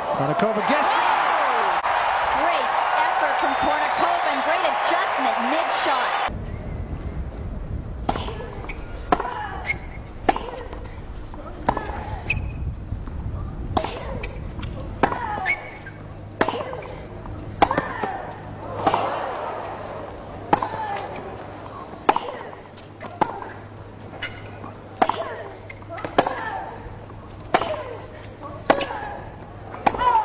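Crowd cheering and applauding for about six seconds, then cut off abruptly. After that comes a long tennis rally: rackets hitting the ball about once a second, many hits paired with a short grunt from the player, over a steady low broadcast hum.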